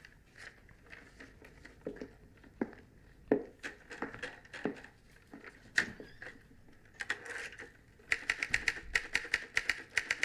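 Manual typewriter keys clacking in a film scene playing on a computer. There are a few scattered strokes at first, then a fast run of keystrokes in the last two seconds.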